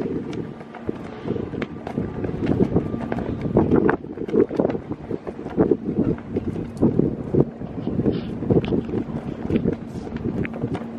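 Wind buffeting the microphone in uneven gusts, a low rumble with scattered faint clicks through it.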